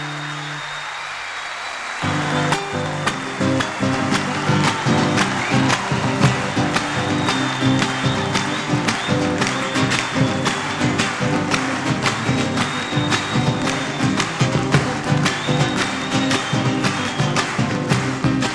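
A live band's sustained final chord fading out, then about two seconds in, a theatre audience breaks into applause, which continues with music going on beneath it.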